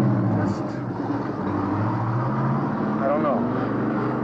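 Street traffic: a motor vehicle's engine running steadily with a low, slowly shifting hum. A short spoken word comes about three seconds in.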